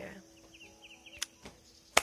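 A quiet outdoor lull with a few faint, high, quick bird chirps about half a second in, then a soft tick and, just before the end, a single sharp click, the loudest sound here.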